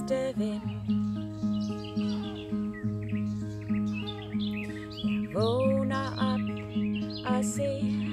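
Acoustic guitar played in a steady pattern, a chord about twice a second over a low bass note, with birds chirping in the background.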